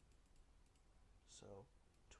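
Near silence with a few faint computer clicks.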